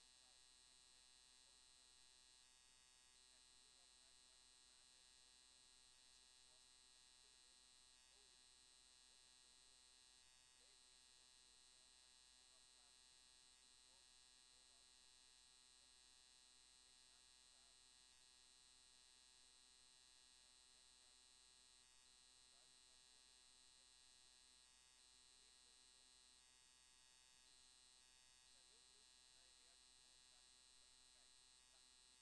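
Near silence: only a faint steady hum.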